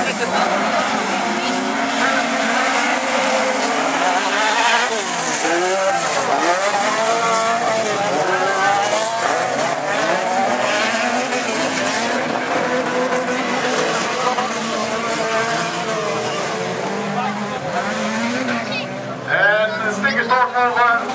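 A pack of autocross cars racing on a dirt track. Several engines rev and change pitch over one another, with tyre and gravel noise underneath.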